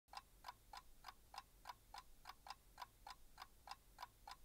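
Faint, steady ticking of a timepiece, about three ticks a second.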